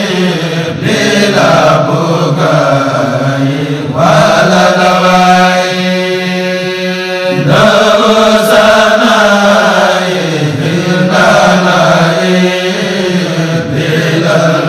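Mouride devotional chanting: voices singing slow, drawn-out phrases over a steady low drone, with one long held phrase a few seconds in.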